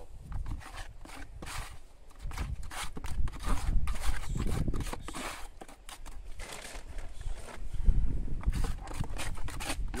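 Wet sand-and-cement mortar being stirred with a spatula in a plastic builder's bucket: irregular scraping and scuffing strokes against the sides and bottom of the bucket.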